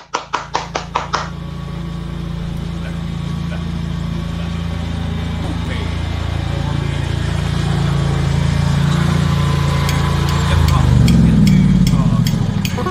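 A rapid series of about ten sharp clicks in the first second, then an engine running steadily with a low hum, growing a little louder near the end.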